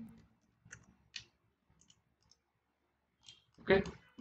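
Computer mouse clicks: two short, sharp clicks about half a second apart, about a second in, followed by a few fainter ticks.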